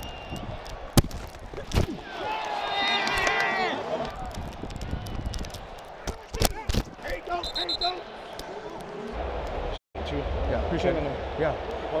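Field sound picked up by a football player's body-worn microphone during play: sharp thumps and knocks on the mic as he moves, the loudest about a second in, with indistinct shouting voices around him.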